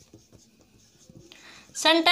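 Marker pen writing on a whiteboard: faint short strokes as a word is written. A woman's voice starts near the end.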